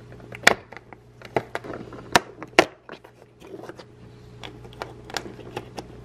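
Fingernails tapping and picking at a cardboard Lindt advent calendar door and pulling it open, with crackles from the plastic tray behind it: a run of sharp clicks and ticks, the loudest about half a second in and two more around two to two and a half seconds in.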